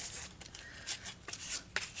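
Faint, irregular rubbing of a bare hand wiping over clear stamps, with a few light taps, to clear off the manufacturing residue so the stamps take ink well.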